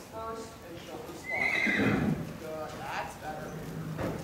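A horse whinnying: a loud, high call that falls in pitch, starting a little over a second in and lasting under a second, with shorter calls around it.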